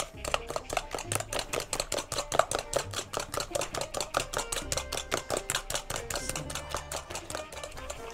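A spoon beating eggs and sugar by hand in an enamel bowl: quick, regular clicks of the spoon against the bowl, about five or six a second. The mix is being whisked until it turns liquid.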